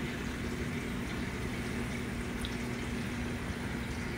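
Steady rush of moving water with an even low hum from a large reef aquarium's circulation pumps and filtration.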